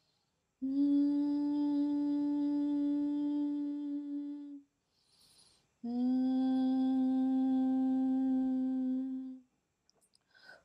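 A woman humming two long, steady notes of about four seconds each, with a quick breath between them.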